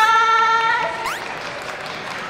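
Light audience applause as the announcer's amplified voice finishes a drawn-out closing word, with a brief rising whistle-like sweep about a second in.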